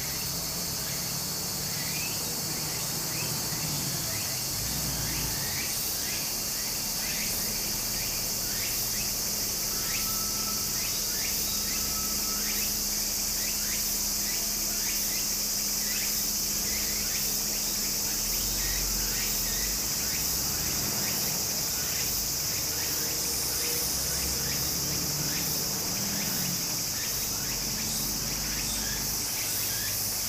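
Cicadas singing in a steady, high-pitched chorus, with a shallow stream flowing over rock beneath it.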